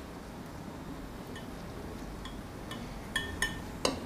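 Kitchen utensils clinking against dishes: a few faint clicks, then several louder, ringing clinks in the last second.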